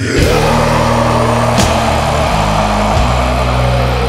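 Death metal studio recording: the full band comes in with heavily distorted guitars holding low chords over bass and drums, with a sharp hit about a second and a half in.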